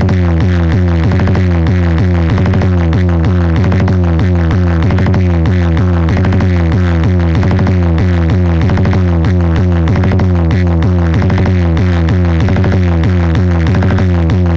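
Loud electronic dance music with heavy, continuous deep bass and a steady repeating beat, played through a large wall of stacked loudspeaker cabinets billed as a competition JBL sound system setup.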